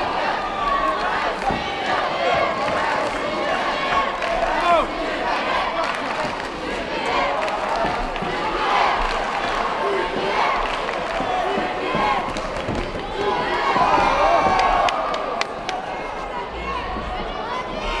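Arena crowd during a kickboxing bout: many overlapping voices shouting and cheering, none of it clear speech. A few sharp thuds are heard as blows land.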